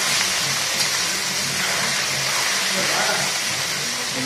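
Small fish frying in hot mustard oil in an aluminium wok: a steady, unbroken sizzle.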